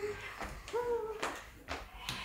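Two brief soft vocal sounds from a person, one at the start and one about three-quarters of a second in, with a few light knocks in between.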